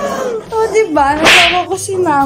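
A woman's voice making drawn-out exclamations that slide in pitch, with a sharp, loud hissing burst a little past the middle.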